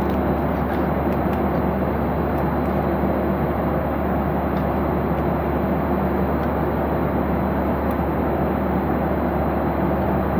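Steady cabin noise of a jet airliner in cruise: a constant rush of airflow and engine drone with a low hum underneath, unchanging throughout.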